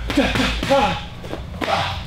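Boxing gloves and a shin-guarded kick smacking against hand-held striking pads in a quick combination, a few sharp hits about a second apart.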